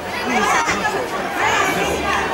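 Chatter of several people talking at once, their voices overlapping and no single speaker clear.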